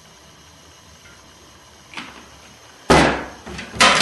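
Two sudden knocks on a stainless steel draining board, the first about three seconds in and the louder: the plastic oil bottle being set down and the metal pizza base plate shifted as it is greased, after a quiet stretch with a faint click.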